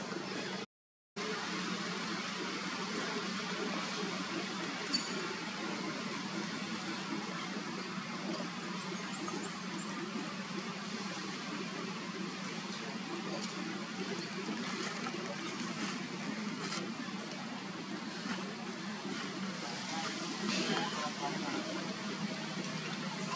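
Steady outdoor background noise, an even hiss over a constant low hum, which cuts out completely for a moment about a second in.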